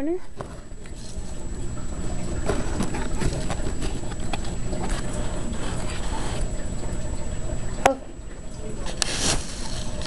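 Handling noise: rustling and light knocks as a hay-tunnel bed is pushed into the back corner of a small plastic pet carrier. A sharp click comes about eight seconds in, and a short swish just after nine.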